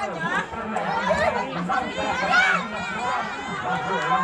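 Many voices talking and calling out at once: spectators and players chattering, with a steady low hum underneath.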